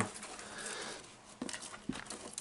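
Faint scratching of a bearded dragon's claws on the wall of a plastic tub as it climbs, with a couple of light taps near the end.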